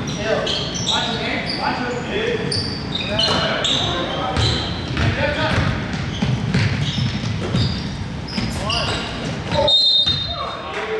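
Indoor basketball game: sneakers squeak on the hardwood court, the ball bounces as it is dribbled, and players call out to one another in a reverberant gym. Near the end comes a short, shrill referee's whistle.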